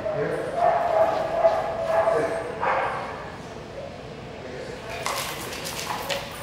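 Dogs barking and whining, with people's voices mixed in. A long held whine or howl comes first, then shorter calls, and a sharper noisy burst near the end.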